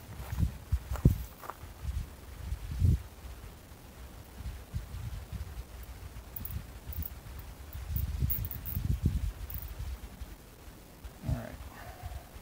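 Hands working a nylon zip tie around a wire on a control stick: irregular low rustling and thumps of handling, with a few short high clicks about the middle.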